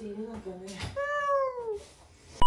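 A cornered tabby-and-white cat meowing once, a drawn-out call about a second in that falls in pitch, after a lower, quieter sound.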